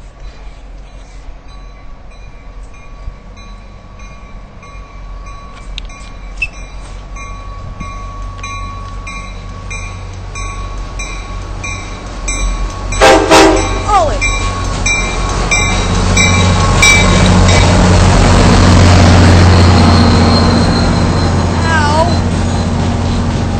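MBTA commuter rail train approaching, with a brief, very loud blast of its horn about 13 seconds in. The rumble of the locomotive and coaches then grows as the train runs past, loudest a few seconds before the end.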